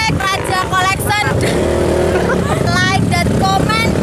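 Trail motorcycle engine running under load on a dirt hill climb, with people shouting over it.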